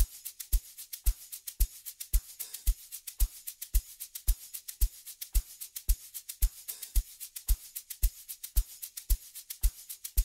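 Amapiano drum groove with no melody or vocals: a steady kick drum about twice a second, with shaker and percussion ticks between the kicks.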